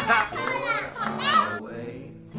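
Young children's voices shouting excitedly, fading out about a second and a half in, with music playing underneath.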